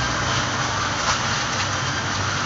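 Steady, fairly loud background noise of a busy shop, with a faint low hum and no single clear source.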